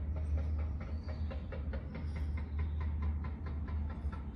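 Wind rumbling on a phone microphone, with a fast, regular clicking of about five ticks a second over it that fades out near the end.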